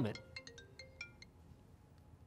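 Smartphone ringtone: a run of short, high notes at several different pitches, faint, cutting off about a second and a quarter in as the call is answered.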